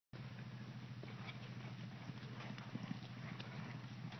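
A horse's hooves striking arena dirt, heard faintly, over a steady low hum.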